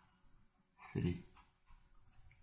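Speech only: a man says a single word, "three", about a second in, with faint room tone around it.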